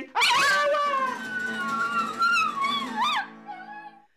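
Chinese Crested dog howling a long, wavering note over a strummed acoustic guitar. The howl rises in pitch just before it breaks off about three seconds in, and a fainter tone lingers after.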